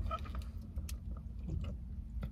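Faint slurps and small clicks of a thick strawberry smoothie being sipped through a plastic straw, over a steady low hum inside a car.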